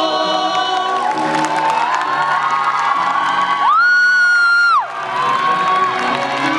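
Cast of singers holding long notes together into microphones over cheering from an audience. Near the middle, one voice holds a single loud, high note for about a second.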